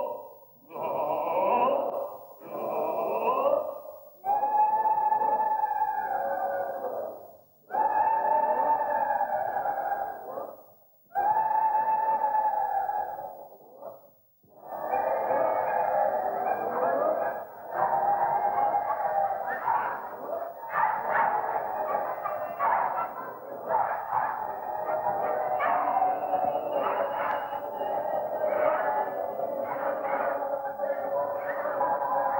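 A roomful of people sounding wordless held tones together on a conductor's cues: first a series of separate long group notes of two to three seconds each with short breaks between, then from about halfway a continuous, overlapping tangle of many voices and sounds, getting very noisy and muddled.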